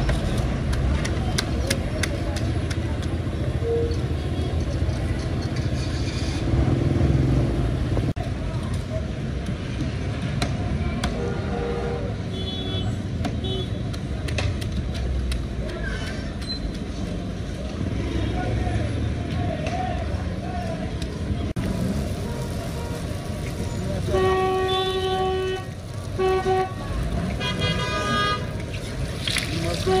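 Street traffic rumbling steadily, with car horns honking, several short honks near the end, and people talking.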